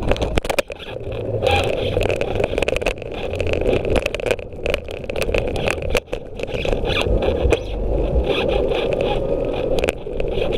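Scooter rolling along a concrete footpath: a steady rumble from the small wheels on the pavement, broken by frequent sharp rattles and knocks as it runs over cracks and joints.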